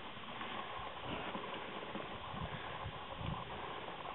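Cattle walking up a farm track to a cattle grid: faint, irregular hoof thuds against a steady background hiss.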